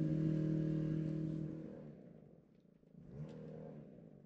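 Small engine of yard-work equipment running steadily, fading away about halfway through, then coming back briefly near the end with a rise and fall in pitch.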